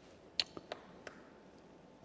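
A quiet pause with three brief, faint clicks a little under a second in, the first the sharpest.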